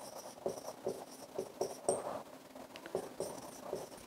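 Marker pen writing on a whiteboard: a quick series of short, faint scratching strokes.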